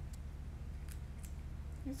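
A cat chewing dry treats: a few faint, sharp crunching clicks, spaced irregularly, over a steady low hum.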